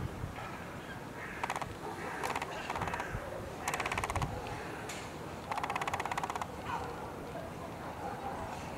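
A bird's harsh, rattling calls, five or six short bursts of under a second each.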